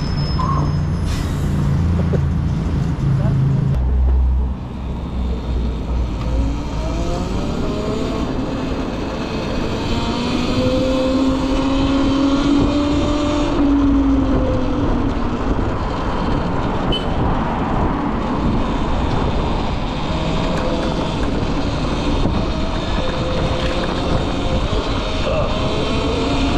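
Cake Kalk electric motorcycle riding through city traffic: road and wind noise with a thin motor whine that rises in pitch as the bike speeds up and falls again as it slows. A low rumble sits under the first few seconds as it pulls away from a stop.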